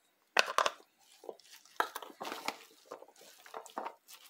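Wooden spoon stirring diced celery, onion and shredded carrot in a plastic tub: crunchy rustling with irregular knocks against the container, the loudest cluster about half a second in.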